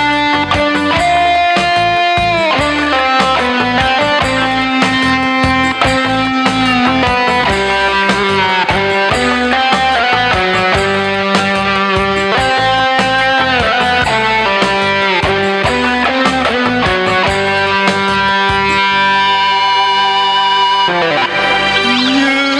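Instrumental interlude of a Vietnamese pop song played on an arranger keyboard: a guitar-like lead melody with held, bending notes over a steady drum beat. A short rising glide comes just before the end.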